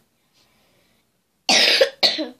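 A girl coughing into her fist: two sharp coughs in quick succession near the end.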